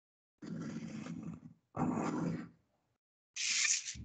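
Pencil drawn along a plastic ruler on paper lying on a desk: two rasping strokes, the first about a second long and the second shorter. A brief louder hiss comes near the end.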